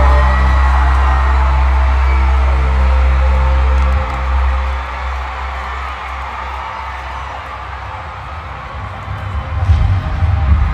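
Live stadium concert music through a large PA: a loud, sustained low synth drone that drops away about four seconds in, leaving crowd noise with scattered whoops. A pulsing bass beat starts near the end.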